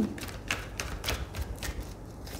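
A deck of oracle cards being shuffled by hand: a quick, irregular run of light card clicks and flicks.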